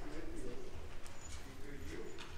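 Low murmur of people talking quietly in a large room, with a few faint ticks or shuffles.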